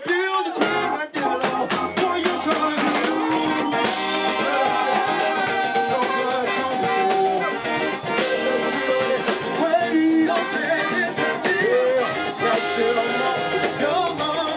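Live band playing a song: guitars and drum kit, with long held, sliding melodic notes over the top.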